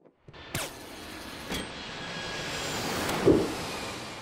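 Jet airliner sound effect: engine noise that swells steadily as the plane flies past, with a couple of sharp strikes early on and a brief louder burst about three seconds in.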